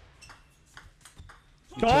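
Table tennis rally: a quick series of light clicks as the plastic ball is struck by the bats and bounces on the table. A man's commentary voice comes in near the end.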